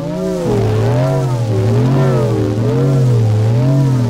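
Experimental sound-art drone: a low, buzzing pitched tone with overtones whose pitch wavers up and down in a steady, regular warble. The tone drops lower about half a second in.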